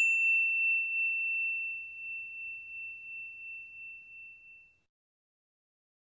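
A single bell-like ding sound effect, struck just before and ringing on in one clear high tone that wavers slightly as it fades, dying out about four and a half seconds in.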